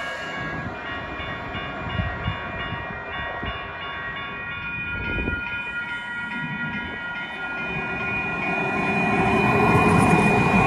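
TriMet MAX light-rail train running with a steady high electric whine, with a few short knocks. The sound grows louder over the last few seconds as a train comes in and passes close by.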